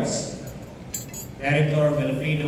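A few light clinks of cutlery on tableware, about a second in, during a pause in a man's amplified speech.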